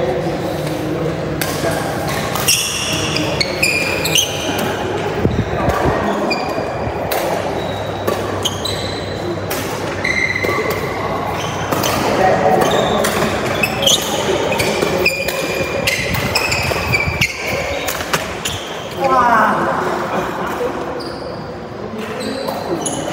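Doubles badminton rally in a large echoing hall: sharp racket strikes on the shuttlecock and thuds of footsteps, with many short shoe squeaks on the court floor. Voices call out between shots.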